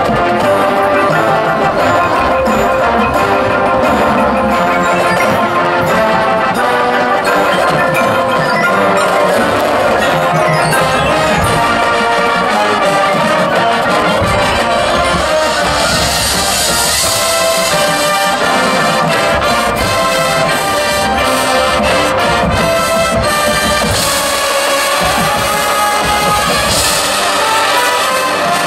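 A high school marching band playing, with brass over front-ensemble mallet percussion such as marimba and glockenspiel. A bright high wash swells in twice, past the middle and again near the end.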